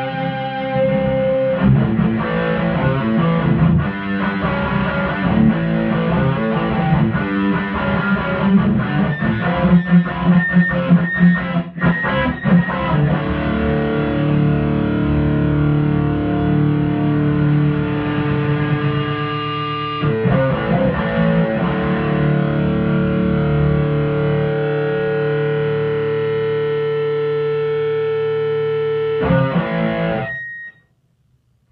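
Distorted electric guitar played through an overdriven tweed-style amp, with no Tube Screamer pedal in the chain. Picked riffs and chord strikes in the first half give way to chords left ringing for several seconds at a time, with a quick flurry of strikes near the end.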